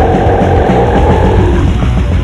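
Death/black metal from a 1996 demo tape: distorted guitars and fast drumming, with a long held, slightly falling note over them that fades out near the end.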